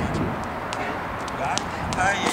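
Tennis drill on an outdoor hard court: a scattering of short sharp ticks and scuffs from quick footwork and balls, over steady outdoor background noise, with a voice briefly heard in the second half.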